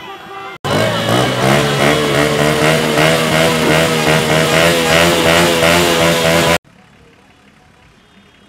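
Street celebration traffic: a plastic fan horn blowing briefly at the start, then a loud stretch of motorcycle and car engines running amid shouting voices, which cuts off abruptly to a much quieter street hum near the end.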